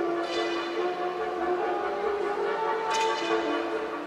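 Marching band brass section playing sustained chords, with bright accented attacks shortly after the start and again about three seconds in.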